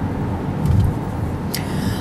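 Steady low rumble of road and engine noise heard from inside a moving car, with one brief click near the end.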